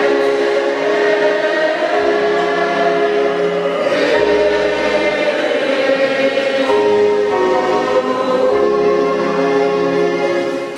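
Church choir singing a slow hymn in long held chords that change every couple of seconds, over sustained instrumental accompaniment with a deep bass line.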